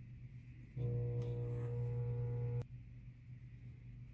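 Microwave oven running with a steady electrical hum, starting under a second in and cutting off suddenly with a click after about two seconds.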